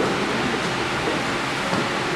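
Steady rushing background noise with no clear pitch, rhythm or distinct events.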